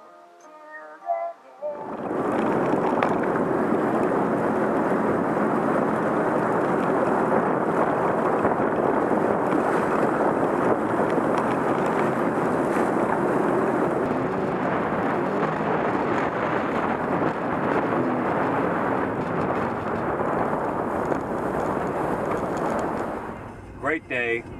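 Sea-Doo GTX Limited personal watercraft running at speed: a steady, loud rush of wind, water and engine noise that starts suddenly about two seconds in, after a short stretch of music.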